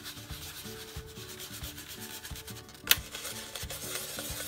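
Stiff stencil brush dabbed and rubbed into acrylic paint on a foam plate, a soft steady scrubbing as paint puddles are worked out to load the brush. One sharp tap stands out about three seconds in.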